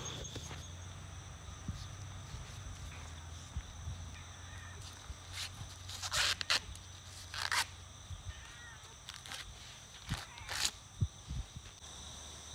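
Sweet corn being shucked by hand: a few short tearing rips of husk, about six, seven and a half and ten seconds in, over a steady chorus of crickets.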